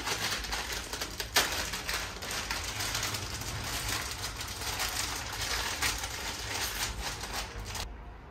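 Dried instant ramen noodle block being crushed by hand inside its sealed plastic packet: continuous crinkling of the wrapper and crackling of the breaking noodles, with one sharp crack about a second and a half in. A steady low hum runs underneath.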